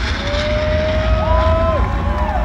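Loud live-concert sound between tracks: long held tones slide up and down in pitch over a steady deep bass rumble from the stage sound system, with crowd noise underneath.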